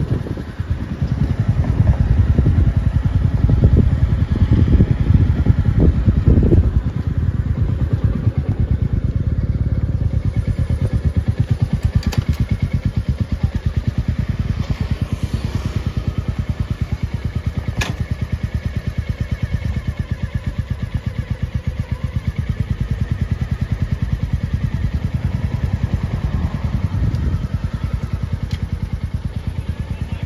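Royal Enfield motorcycle engines running with a rapid, even exhaust pulse: louder under way for the first several seconds, then a steadier idle for the rest.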